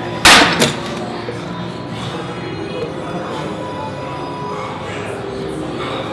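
Gym weights set down with a loud, sudden impact about a quarter second in as a set of back training ends, over steady background music.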